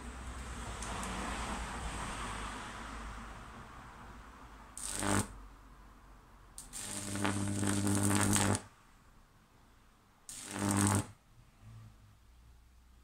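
High-voltage electric arc from a microwave-oven transformer, struck between a nail on a wooden pole and a grounded iron plate: three loud bursts of crackling mains buzz, the middle one lasting about two seconds and the last about a second. The arc is hot enough to melt the nail's head and burn holes through the plate.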